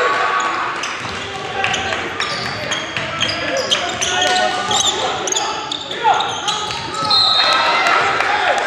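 Basketball game sounds in a gym: a ball bouncing on the hardwood floor, a few short shoe squeaks, and indistinct voices echoing in the hall.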